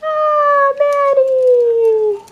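A dog howling: one long, loud howl that slides slowly down in pitch, with a brief catch under a second in.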